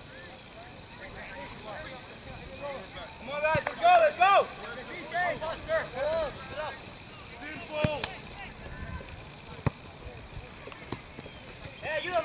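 Distant shouting voices of soccer players calling across the pitch, too far off to make out, loudest about four seconds in, with a few sharp knocks in between.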